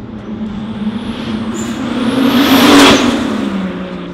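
2JZ-GTE-swapped BMW Z4 coupe driving past through its custom exhaust. The note climbs in pitch and grows louder as it approaches, peaks a little under three seconds in, then drops in pitch as it pulls away. A faint high whistle runs over it.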